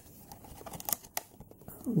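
Plastic blister packaging on a toy's cardback being handled: quiet crinkling with a few light clicks near the middle.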